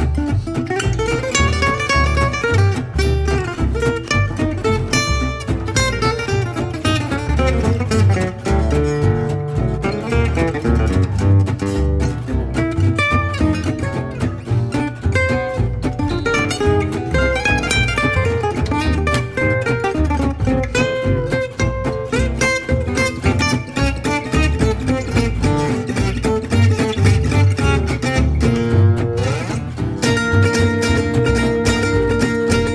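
Instrumental break of a swing tune in gypsy-jazz style. A Selmer-Maccaferri-style acoustic guitar plays fast single-note runs over strummed rhythm guitar and a double bass pulse.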